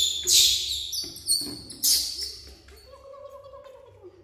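Young macaque monkeys squealing in short, high-pitched bursts during the first two seconds. A quieter, steady, slightly wavering call follows from about three seconds in.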